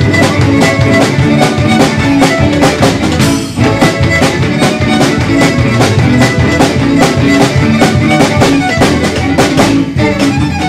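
A live string band playing a brisk, upbeat instrumental fiddle tune: fiddle, upright bass, electric guitar and a snare drum keeping a steady beat. The band drops back briefly about three and a half seconds in, then carries on.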